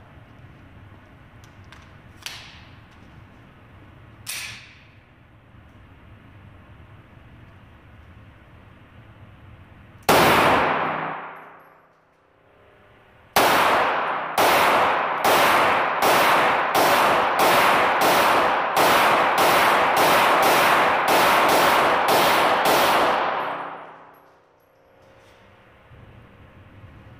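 Beretta 92FS 9mm pistol firing at an indoor range: a single shot that rings on in the room's echo, then after a short pause a rapid string of about fourteen shots, roughly two a second, before stopping. Two faint clicks come a few seconds before the first shot.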